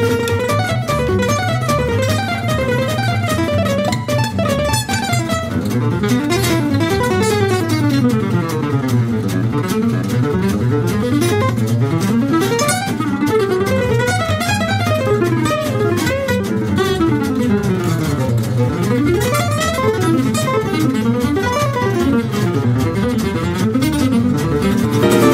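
Gypsy jazz (Selmer-Maccaferri-style, oval-soundhole) acoustic guitar playing a fast improvised solo of rapid rising and falling single-note runs at about 300 beats a minute, over double bass accompaniment.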